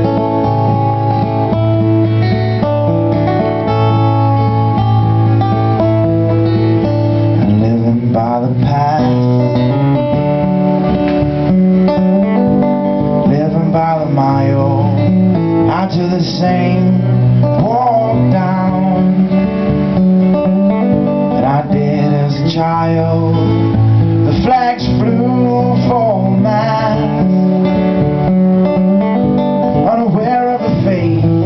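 Acoustic guitar strummed live in a steady pattern, with a man's voice singing over it from about eight seconds in.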